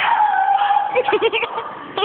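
A person's high-pitched squeal, held for about a second, then a quick run of short yelping laughs.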